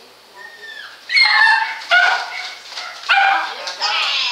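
A dog vocalizing: a short, faint falling whine about half a second in, then three loud, high-pitched barks, a little after one second, at about two seconds and at about three seconds.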